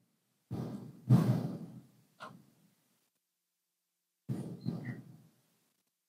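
A person sighing and breathing out in a few short breathy bursts, with dead silence between them.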